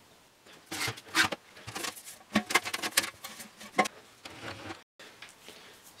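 Irregular light knocks, scrapes and rustles of hands handling equipment on a workbench, broken by a brief dropout about five seconds in.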